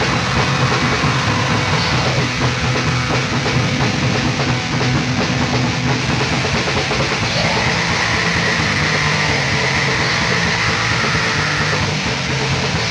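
Black metal band playing at full tilt: distorted electric guitars, bass and drums in a dense, steady wall of sound, from a raw 1995 four-track recording.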